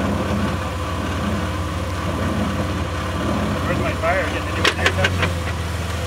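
Jeep engine running at a low, steady idle as the Jeep crawls slowly down a rock ledge. A few sharp knocks come just before the end, as the engine note grows a little stronger.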